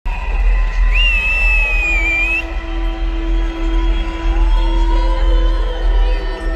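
Live pop-rock concert music recorded from within the crowd in a large arena hall, with a heavy, steady bass under long held notes. A high, wavering note sounds for about a second and a half near the start.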